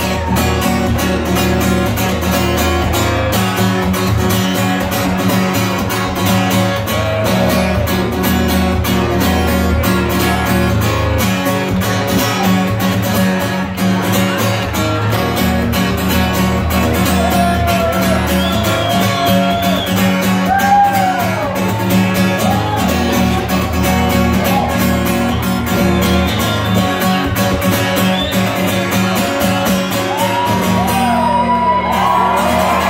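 Acoustic guitar strummed steadily in an instrumental passage of a live solo song, the chords ringing on without a break.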